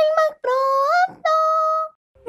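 A short high-pitched vocal jingle, sung or synthetic: two quick notes, then a note sliding upward and one held note.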